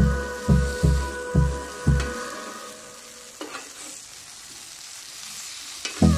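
Background music with a steady beat for about the first two seconds, then it drops out, leaving glazed meat sizzling on a hot grill pan, with a light click about three and a half seconds in.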